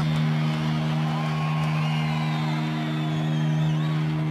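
A sustained low note drones steadily from the band's stage amplification between songs. Live crowd noise and a few whistles rise and fall over it.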